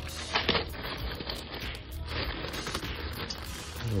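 Clear plastic bags of toys crinkling and rustling as they are picked up and shifted around in a shopping cart, a run of small irregular crackles.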